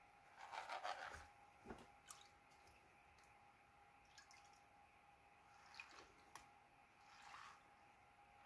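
Faint water sounds from a plastic gold pan being dipped and swirled in a tub of muddy water: a brief slosh about half a second in, then scattered drips and small splashes.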